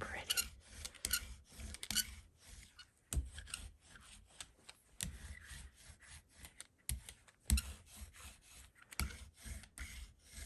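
A hand brayer rolled back and forth through paint on a gel printing plate: repeated rubbing, rasping rolling strokes with short pauses between them.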